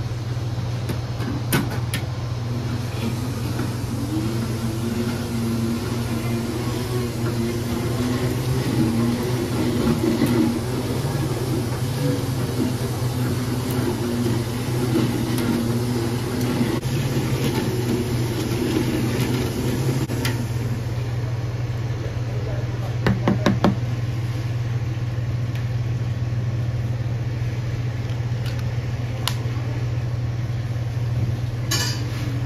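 Milkshake spindle mixer running, its motor tone wavering as it blends, then stopping about twenty seconds in. A steady low equipment hum runs underneath, and a few quick knocks come shortly after the mixer stops.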